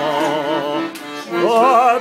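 A man singing high, held notes with wide vibrato, accompanied by an accordion. The voice drops away briefly about a second in, then comes back on a new held note.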